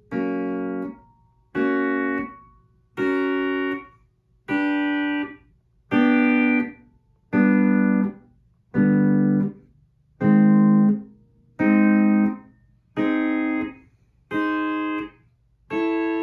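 Rittenberry pedal steel guitar playing three-string major chords one after another, about every second and a half. Each chord rings briefly and is cut off short by pick blocking, and the steel bar moves up one fret between chords.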